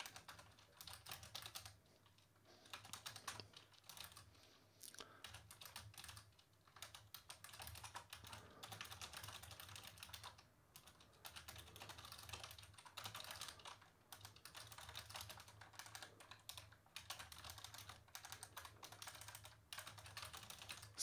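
Faint typing on a computer keyboard: quick, irregular runs of keystrokes with short pauses between them.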